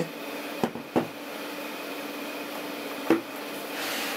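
Aluminium laptops handled and turned over in the hands, with three light knocks of the cases, twice close together early and once about three seconds in, over a steady background hum.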